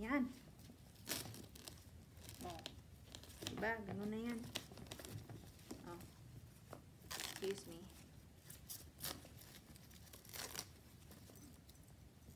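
Protective wrapping on a new handbag's handles crinkling and tearing as it is pulled off, in several short sharp rustles. A brief vocal sound near the start and another around four seconds in.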